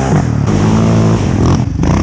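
Single-cylinder engine of a Suzuki LTZ 400 quad swapped to a Yamaha Raptor 700 engine, revving hard under acceleration. Its pitch climbs, falls back briefly and climbs again.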